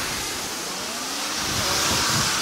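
Jet airliner engines on a landing approach: a steady rushing noise with a faint whine gliding in pitch, growing louder in the second half.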